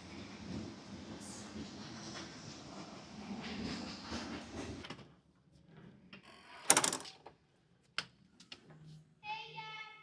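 A commercial gym's steel exterior door being opened. Steady outdoor background noise runs for about five seconds. After that comes a loud, short rush and clunk as the door swings, then a sharp click about a second later.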